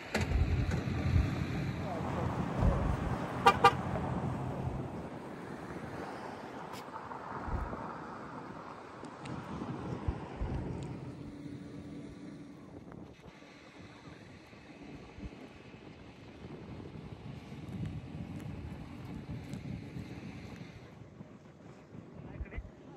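Car traffic running past on a mountain highway, loudest in the first few seconds and swelling again around the middle. About three and a half seconds in there are two short toots.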